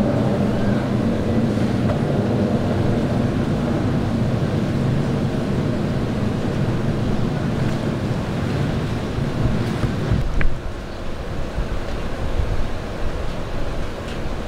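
Steady low rumble of city street noise, with one sharp click about ten seconds in, after which the rumble drops a little.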